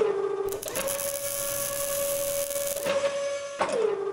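Sound-designed robot-arm servo whine at a steady pitch for an animated logo sting, dropping in pitch near the end as the motion stops. A bright hiss runs over it from about half a second to three seconds in, as the tool works the metal plate.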